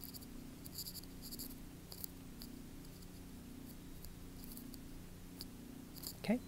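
Faint scratching of a stylus writing on a tablet screen, in short separate strokes, over a steady low hum.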